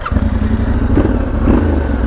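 Yamaha Ténéré 700 World Raid's 689 cc CP2 parallel-twin engine firing up right at the start and running at idle with a deep, steady rumble.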